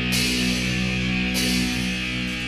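Heavy metal band recording from 1987: a held, distorted electric guitar chord over drums, with cymbal crashes near the start and again past the middle, and no vocals.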